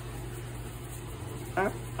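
Faint, steady hiss of table salt poured from a canister onto broccoli in a bowl of cold water, over a low steady hum.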